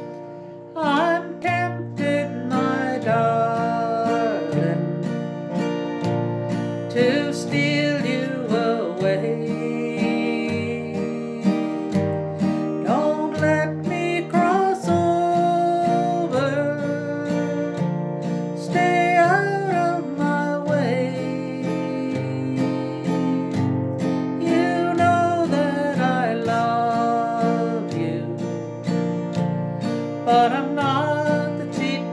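A woman singing a slow country song to her own strummed acoustic guitar, capoed up the neck, with steady chord strums under the sung melody.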